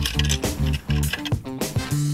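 Short upbeat music jingle with a bouncy bass line of short notes, the sting that opens a segment of the show.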